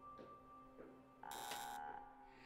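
Faint, sustained music tones, then a short electronic buzz just past the middle that lasts under a second.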